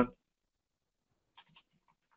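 Near silence with a few faint, short keyboard clicks about a second and a half in, as a chat message is typed.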